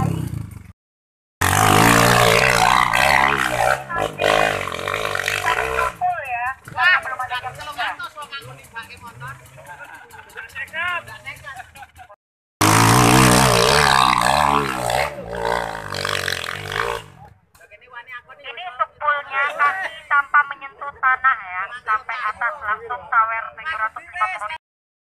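Trail motorcycle engine revving hard in two loud stretches of a few seconds each, with people talking in between.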